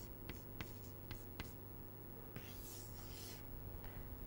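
Chalk writing on a blackboard, faint: a few light taps of the chalk, then a longer scraping stroke a little past halfway through.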